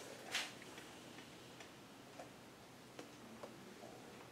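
Paper handled at a table: a short rustle near the start, then faint, irregular small ticks and taps in a quiet room.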